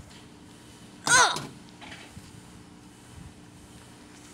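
A short, high-pitched vocal cry about a second in, rising and then falling in pitch, over a faint steady hum.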